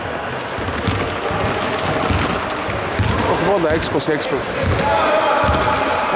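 A basketball being bounced on a hardwood gym floor, a run of low thuds as it is dribbled up the court.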